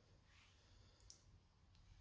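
Near silence: room tone with a faint brief rustle and one small click about a second in.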